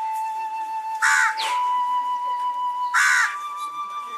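Background score of a flute holding one long note that steps up slightly in pitch twice. A crow caws loudly twice over it, about a second and three seconds in.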